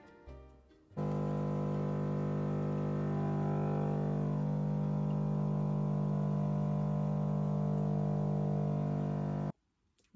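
Automatic coffee machine's pump buzzing steadily while it dispenses espresso into a glass of milk for a cappuccino. The buzz starts abruptly about a second in and cuts off just before the end.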